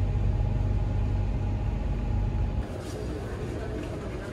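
Passenger elevator car running upward with a steady low rumble, which cuts off abruptly about two and a half seconds in as the lift stops at its floor.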